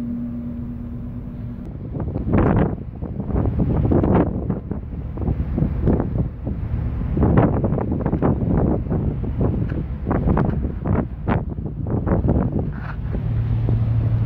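Wind buffeting a phone microphone in irregular gusts on a ship's open deck, over the ship's steady low rumble; a steady hum is heard for the first second or two before the gusts begin.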